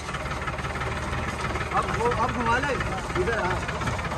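Farm tractor's diesel engine running steadily while the tractor is driven, a low, even firing pulse throughout.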